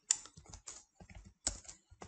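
Typing on a computer keyboard: an irregular run of about a dozen keystrokes, a couple of them struck harder.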